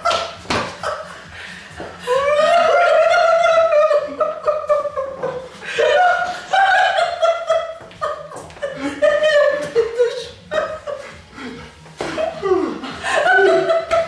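A small group of people laughing and giggling, with bits of talk mixed in.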